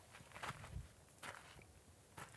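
Faint footsteps crunching and scuffing on gravelly dirt, a few steps about half a second apart.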